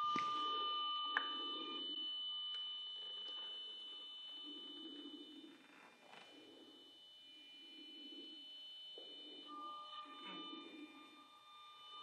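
Faint steady electronic whine made of several high-pitched tones over quiet room sound. The lowest of the tones drops out about two seconds in and comes back near the end.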